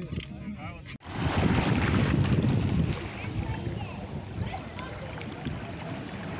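Small waves washing in over a shallow rock shelf, the water lapping and sloshing, starting suddenly about a second in and loudest for the next couple of seconds before settling to a steadier wash. Faint voices are heard in the first second.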